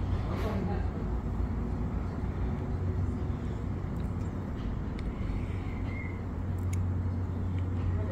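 A steady low mechanical rumble, like a motor running, that comes in suddenly at the start, with a few faint clicks over it.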